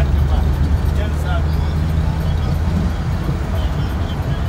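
Steady low rumble of a vehicle driving along a road, heard from inside the cabin, with faint voices over it.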